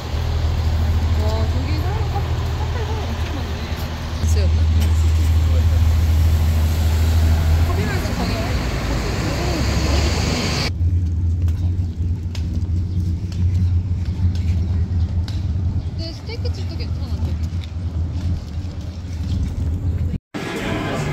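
Street traffic at a busy city intersection: a steady low rumble of car engines, with voices of passers-by. The higher sounds drop away abruptly about halfway through, leaving mostly the low rumble.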